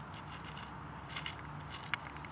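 Plastic screw cap being twisted shut on a soda bottle: faint, scattered clicks and scrapes of the cap threads.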